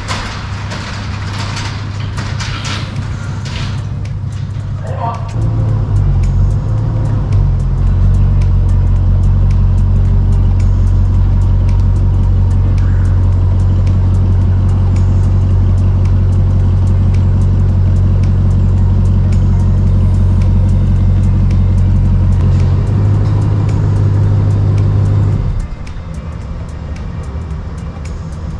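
Ram pickup truck's engine running at low speed while it reverses a car-hauler trailer into the shop, a steady low hum that cuts off suddenly near the end as the engine is switched off.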